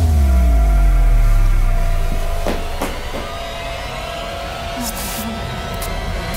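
A sudden deep cinematic boom with several tones sliding downward as it dies away over about two seconds, leading into a dark, droning electronic film score with a few sharp clicks.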